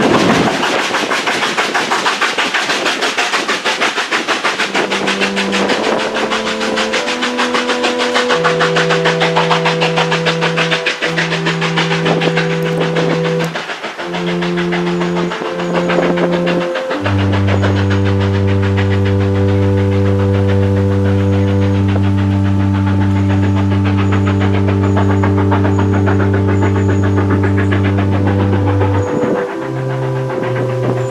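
A steam train running past with a rapid, even beat that thins out in the second half, while slow, sustained organ-like music chords come in about five seconds in and take over from about seventeen seconds with a long held low chord.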